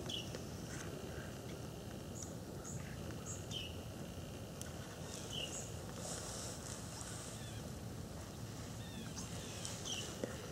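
Faint outdoor ambience: a wild bird giving short, high, downward chirps every second or two over a steady low background noise.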